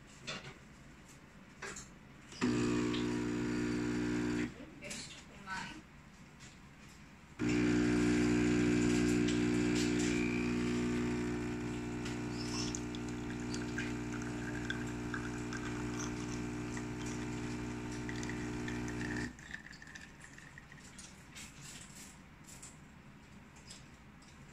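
SMEG espresso machine's pump humming as it pulls an espresso shot: it runs for about two seconds, stops, then starts again about seven seconds in and runs steadily for about twelve seconds before shutting off. A few faint clicks fall in the gap between the two runs.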